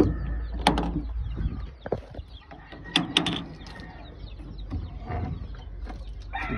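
Wire-mesh loft door being handled and opened: a few sharp metallic clicks and rattles, the loudest about three seconds in.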